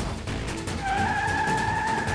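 Road vehicle rumble, with a truck's horn sounding one long steady blast that begins just under a second in, over dramatic background music.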